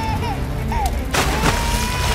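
A sudden loud blast about a second in as a clay water pot bursts and water sprays out. It plays over background music with a long held high note.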